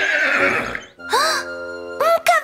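Horse whinny sound effect for a cartoon horse, played over a children's song's backing music. A breathy first part gives way, after a short break about halfway through, to a short pitched call over held chords.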